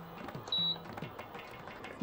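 A short, high-pitched electronic beep about half a second in, with a low hum under it, over faint hiss.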